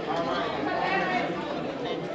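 Several people talking at once at tables in a large hall, a steady chatter of overlapping voices with no single speaker standing out.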